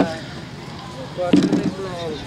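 A man speaking in Marathi, welcoming guests. His voice stops near the start and picks up again about halfway through, with open-air background noise in the gap.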